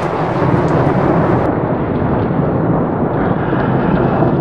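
Thunder rumbling loud and unbroken through heavy rain, turning duller about a second and a half in.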